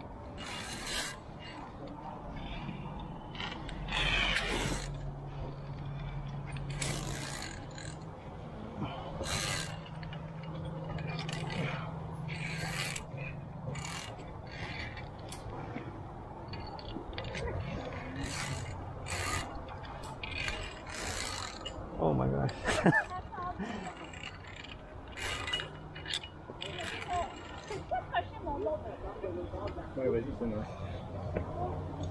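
Irregular clicks, clinks and scrapes of via ferrata climbing gear: lanyard carabiners sliding and catching along the steel safety cable, mixed with hands and shoes scraping on rock. A louder clatter comes about two-thirds of the way through.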